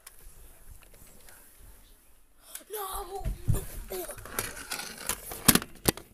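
Low hiss for about two and a half seconds, then a child's wordless vocal noises close to the microphone, with several sharp knocks and bumps of the phone being handled, the loudest near the end.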